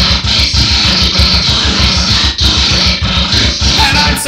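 Loud, dense heavy music with distorted guitar over a very fast, evenly spaced kick-drum beat, with no vocals.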